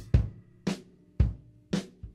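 Music: four sharp drum hits, evenly spaced about two a second, with little sound between them.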